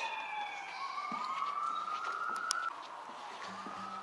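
Police car siren wailing: its pitch falls at the start, then climbs slowly for about a second and a half and fades away near the end.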